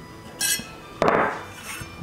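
A few short clinks and knocks as a T-handle hex key is set down on the workbench and the Scout II blower motor with its steel squirrel-cage fan is handled, after the cage's set screw has been tightened. The second knock, about a second in, is the loudest.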